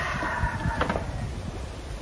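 Wind rumbling on the microphone over outdoor background noise, with a light knock a little under a second in.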